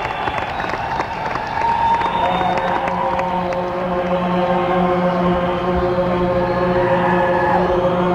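Live rock concert audience cheering and clapping. About two seconds in, a sustained keyboard chord comes in and holds steady over the crowd noise.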